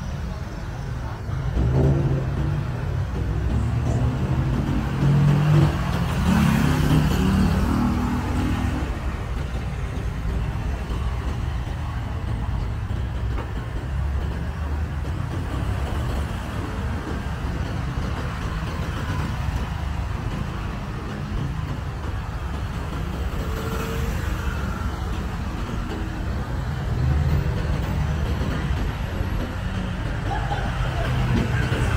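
City street traffic: cars driving past along the road, a steady low rumble of engines and tyres. A louder vehicle passes a few seconds in and another near the end.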